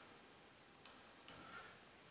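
Near silence: room tone, with two faint ticks a little under a second in and about a second and a quarter in.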